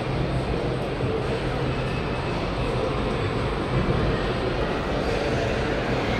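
Steady background din of a busy indoor shopping mall: a continuous wash of crowd noise and people walking.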